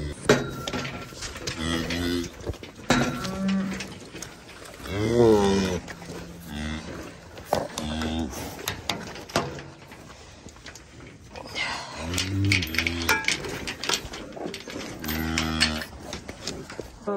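Beef cattle mooing repeatedly in the calving pen, about eight separate low calls, the loudest about five seconds in, with a few sharp knocks between them.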